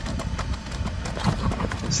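Unitree Go2 quadruped robot's feet knocking on stone paving as it walks forward down a low step in stair-climbing mode: a quick, irregular patter of light footfalls over a low rumble.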